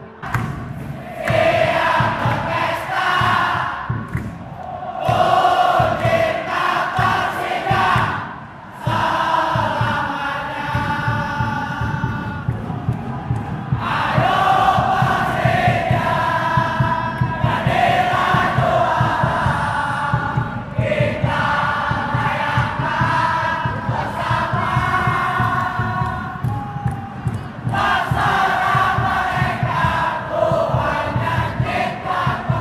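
Large stadium crowd of football supporters singing chants together, the sung lines breaking off briefly about four and eight seconds in.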